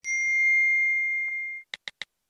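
A single bright bell-like ding that starts sharply, rings on one clear tone for about a second and a half and fades. A few short ticks follow near the end.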